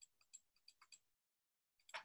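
Faint computer mouse clicks: about five light, quick clicks within the first second.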